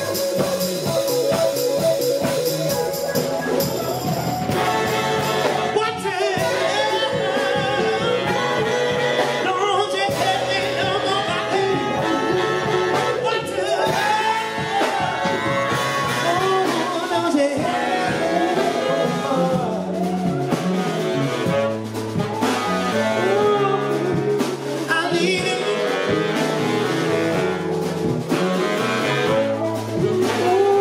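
Live soul band playing: drum kit, electric bass, keyboard and saxophone, with a male lead singer singing over the groove.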